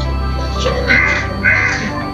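Background music with a steady tone, over which crows caw two harsh calls about half a second apart, near the middle.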